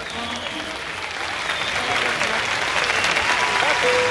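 Audience applauding at the end of the song, the clapping growing louder, with a few voices in the crowd; the band's last held notes fade away at the start.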